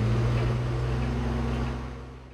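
Diesel engine of a Doosan wheeled excavator running, a steady low hum with a rushing noise on top, fading gradually in the second half.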